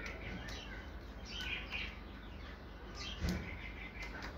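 Caged birds giving short, repeated chirps, with one louder thump about three seconds in.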